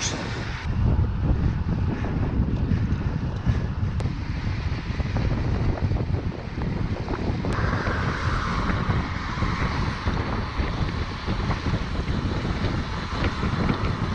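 Wind rushing over the microphone of a camera riding on a moving road bicycle, a steady low rumble of noise with no pauses; its tone shifts slightly about halfway through.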